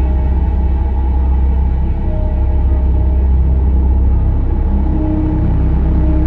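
Dark ambient background music: a deep, steady rumbling drone with long held notes that come and go above it.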